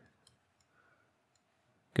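Faint, scattered small clicks from a computer input device as letters are handwritten on screen.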